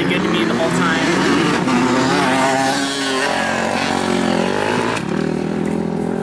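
Dirt bike engines revving at the track, their pitch rising and falling with the throttle.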